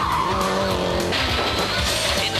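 Subaru Impreza WRC rally car's turbocharged flat-four passing at speed, its engine note falling, with tyre squeal fading early on. Background music with a steady beat runs underneath.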